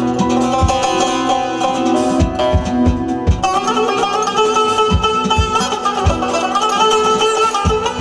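Azerbaijani tar played fast with a plectrum: a run of plucked notes over held low backing tones and a regular low beat. About three seconds in, the melody moves up into higher notes.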